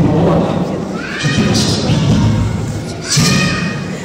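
Loud shouting voice with two long, steeply rising cries, one about a second in and one near the end.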